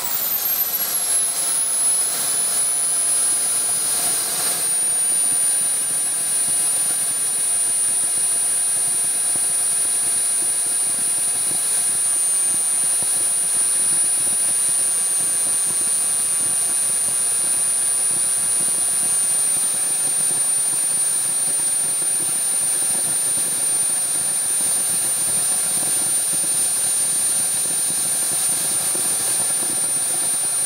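Small RC model jet turbine running. Its high whine falls in pitch over the first few seconds and settles to a steady pitch over a constant rush of exhaust, then starts to climb again right at the end.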